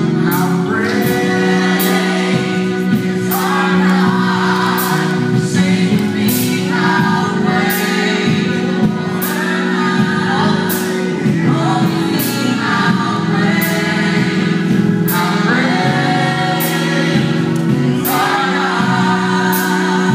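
A gospel vocal group of mixed voices singing live over sustained low chords, in long swelling phrases, with a steady beat of sharp strikes about one and a half a second.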